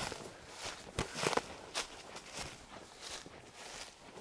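Footsteps of a person walking through dense fern undergrowth: irregular steps with rustling, growing fainter as the walker moves away.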